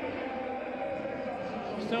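Football stadium crowd: a steady din of many voices, with a faint wavering chant in it.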